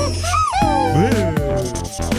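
Cartoon sound effects: several sliding tones, one falling and others rising and falling across each other, heard after the background music drops out about half a second in. The music returns near the end.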